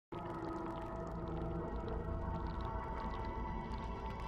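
A quiet, steady droning music bed of sustained tones over a low rumble, starting right at the beginning and holding evenly.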